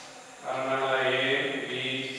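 A man's voice speaking slowly, drawn out in a sing-song way, starting about half a second in.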